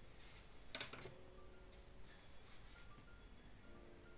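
Near silence with faint background music. About three-quarters of a second in there is a short, soft sniff at a paper perfume blotter.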